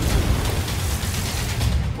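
Dense battle sound effects: a continuous heavy rumble of explosions and gunfire, loud throughout.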